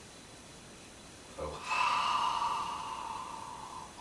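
A man's long audible breath out through the mouth, a steady hiss of about two seconds that fades toward the end, as part of a meditative breathing exercise.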